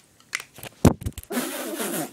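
Handling noise on the phone's microphone: a few clicks and deep bumps about a second in as the phone is moved, followed by a breathy laugh.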